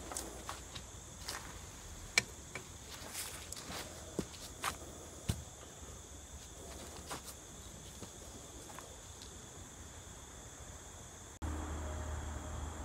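Faint outdoor ambience: a steady high insect drone with scattered light clicks and crunches, the sharpest about two seconds in. The beaker of aqua regia gives no fizzing or bubbling as the sulfamic acid goes in, a sign that no excess nitric acid is left. A low hum comes in near the end.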